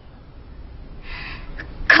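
A woman's sharp breath in about a second in, followed by the start of her speech at the very end.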